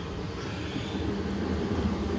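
A heater's blower running: a steady low drone with a hiss of moving air.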